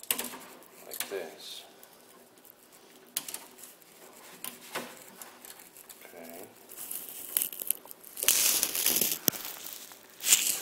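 Handling noise from work gloves gripping a plastic electrical receptacle and its stiff 12 AWG wires: crinkling and rustling with scattered small clicks, and a louder scraping rustle about eight seconds in.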